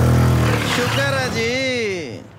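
Motorcycle engine running as the bike rides in, fading after about a second and a half. A voice with a bending pitch follows near the end.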